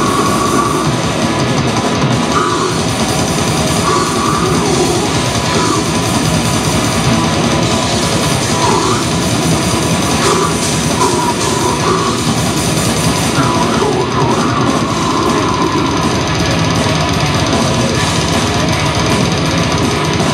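Live extreme metal band playing at full volume: distorted electric guitars, bass and a drum kit, with held guitar notes standing out now and then.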